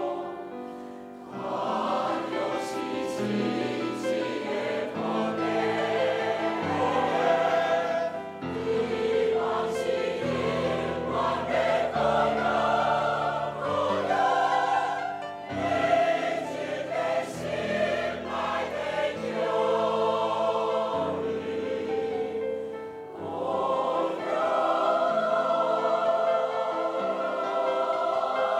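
Large mixed choir of elderly men and women singing in harmony, with brief breaks between phrases about a second in and again near the end.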